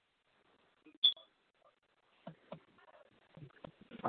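A single short, sharp click with a high tone about a second in, like a line or phone beep, then faint broken voice-like sounds toward the end over a quiet line.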